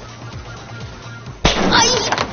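Background music with a steady beat, then about a second and a half in a sudden loud bang as a prank gadget springs out of the opened refrigerator at a woman, followed at once by her shriek.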